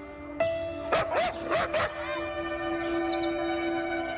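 Background music with a held drone, over which a few short dog-like barks sound between about half a second and two seconds in, followed by quick high bird chirps through the second half.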